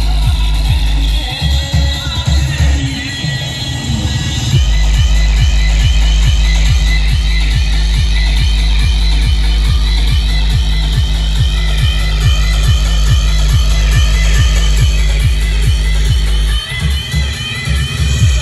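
Loud electronic dance music with a heavy, steady bass beat played through a DJ truck's sound system; the bass drops out for a few seconds near the start and briefly again near the end.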